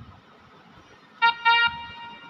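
A Casio SA-5 mini keyboard playing two short notes at the same pitch about a second in, the second held a little longer: the opening of a bhajan melody played on its built-in voice.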